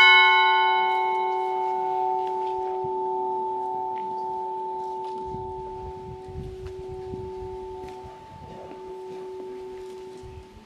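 A new church bell, one of a five-bell set in E major cast by the ECAT foundry, struck once by hand at the very start and left to ring. A bright clang whose high overtones die away within a couple of seconds, then a long, slowly fading hum that is still sounding at the end.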